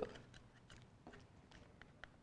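Near silence, with a few faint small clicks and scratches as a pen and a small plastic-cased device are handled.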